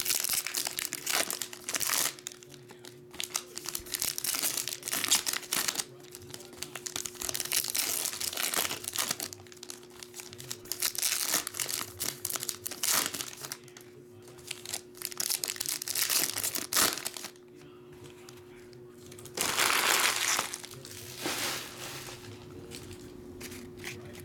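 Foil Panini Flux trading-card packs being torn open and crinkled by hand one after another, in repeated bursts of rustling with short pauses between.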